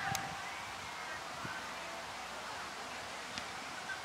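Open-air ambience with a steady rush of wind and faint short calls. A sharp click comes just after the start and another near the end.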